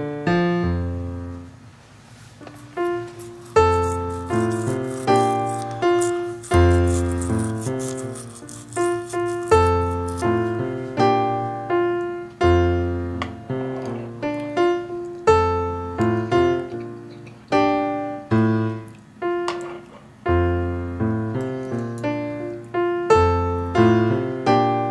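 Keyboard or piano music with a bass line and a steady rhythm. From about two seconds in until about ten seconds in, a rattling, shaking noise runs over it.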